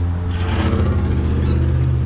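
Steady low hum of a car engine idling close by.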